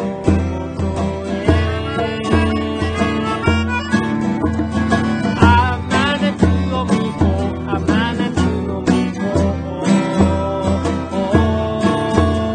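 Upbeat Japanese folk-pop song: acoustic guitar over a steady bass beat of about two pulses a second, with a man singing the lyrics.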